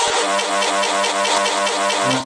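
A steady, buzzing pitched tone with a fast, even pulse, held at one pitch throughout.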